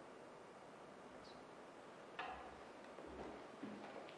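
Near silence: room tone with a few faint knocks and shuffles as musicians with string instruments sit back down. The clearest knock comes about two seconds in.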